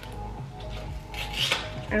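Plastic-and-foil blister pack of pills crinkling as it is handled, with a burst of crackling between one and one and a half seconds in.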